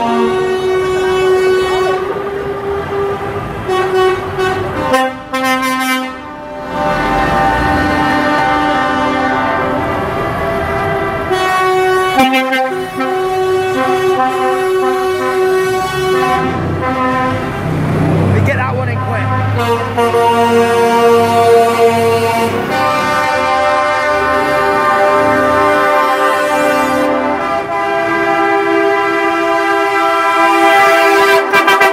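Lorry air horns blaring in long, chord-like blasts, one after another, as trucks in a convoy pass, over the rumble of their diesel engines.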